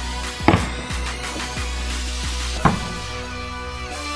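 Background music with a steady beat, cut twice by the sharp crack of a plastic bat hitting a Blitzball, once about half a second in and again just before three seconds in.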